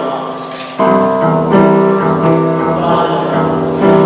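Upright piano being played, full chords struck one after another, each ringing and fading before the next; a louder new chord comes in about a second in.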